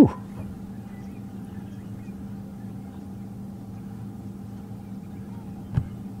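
Steady low hum of an idling vehicle engine, even in pitch throughout, with a brief knock near the end.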